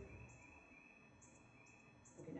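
Near silence, with faint, high-pitched chirping repeating in the background.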